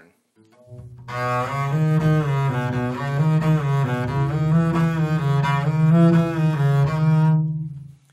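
Double bass played with the bow, stepping through a progressive A major scale three notes at a time with small shifts along the fingerboard. It comes in softly about half a second in, is full from about a second, and stops shortly before the end.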